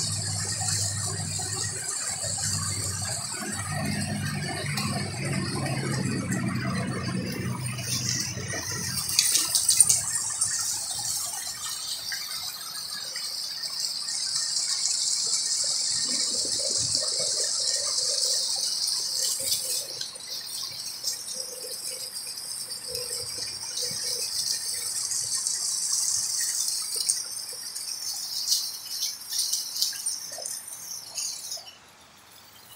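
A steady, high-pitched buzzing chorus of insects that swells and fades in waves. A low hum lies under it for the first third.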